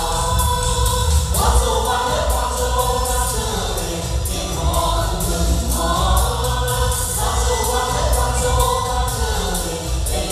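A choir of several voices singing together into microphones, over an amplified instrumental accompaniment with a steady beat.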